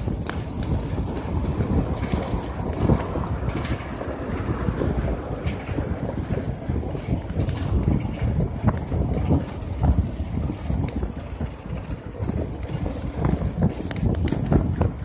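Wind buffeting the microphone: an irregular low rumble that rises and falls in quick gusts.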